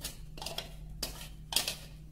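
A metal spoon scraping wet blended pulp out of a clear plastic mixer jar: about four short scrapes, a little under half a second apart.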